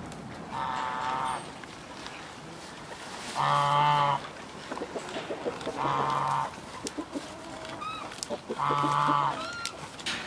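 Four steady-pitched animal calls, each well under a second long, repeated every two to three seconds, with soft crunching of reindeer chewing fresh greens close by and a few small high bird chirps near the end.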